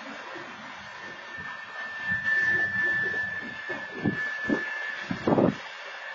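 Freight train rolling through a grade crossing: irregular clatter and knocks of wheels over the rails, the loudest about two seconds in and again near the end. A steady high squeal runs alongside from about one second to five seconds in.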